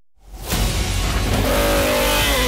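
A moment of silence, then a classic racing car's engine comes in loudly about half a second in and revs up, its pitch climbing near the end, with music underneath.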